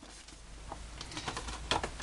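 Faint rustling with a few light clicks and taps: paper packaging being handled and pulled open by hand.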